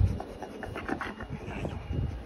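Wolfdog gnawing on a hard chew treat, an irregular run of short crunches and scrapes.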